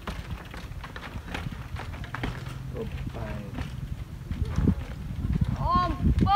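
Mountain bike hopping up concrete steps: a run of irregular knocks as the tyres land on step after step, over a low steady rumble. Voices are faint in the background, and a person's call rises and falls near the end.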